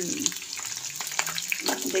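Momos shallow-frying in hot oil in a pan, a steady sizzle with scattered small crackling pops.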